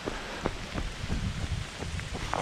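Heavy rain falling, with wind rumbling on the camera microphone and a few brief sharp taps.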